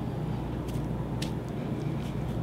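Steady low room hum, with a few faint, brief rustles as hands pull tufts of merino wool top apart and lay them down.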